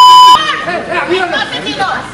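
A loud, steady censor bleep cuts off about a third of a second in, then agitated, overlapping voices argue. The bleep masks abusive words.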